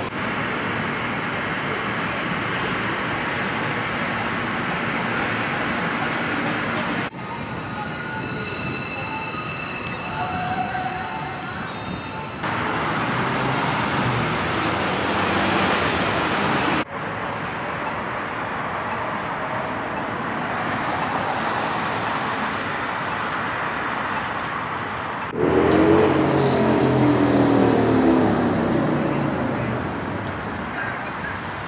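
Downtown city street noise: steady road traffic and passing vehicles. The sound changes suddenly several times as the takes cut, and it is loudest in the last few seconds, where an engine's pitch wavers.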